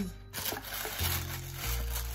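Background music with a steady bass line that changes note twice, under the faint rustle of a cardboard box's flaps and tissue paper as the box is opened.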